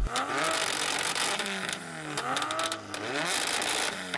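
A tuned Toyota Supra's three-litre turbo straight-six and a Nissan Silvia S15's built 2.2-litre SR22 four-cylinder revved together at standstill, heard from some distance. Repeated overlapping rev blips, each rising and falling in pitch.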